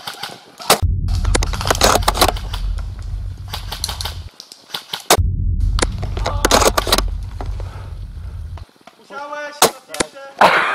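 Heavy low rumble of wind and handling noise on a rifle-mounted camera's microphone while the rifle is carried on the move. It comes in two long stretches split by a short gap, with many sharp clicks and knocks over it. A voice is heard briefly near the end.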